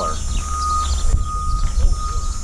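Low, fluttering wind rumble on the microphone outdoors, with faint talk in the background and a faint steady high whine that comes and goes.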